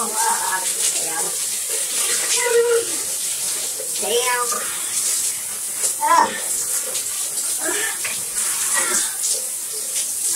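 Shower running, a steady hiss of falling water. Short wordless vocal exclamations come and go over it, a few sliding up in pitch.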